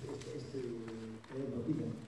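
A man's voice making drawn-out, hesitant sounds between phrases, quieter than the talk around it.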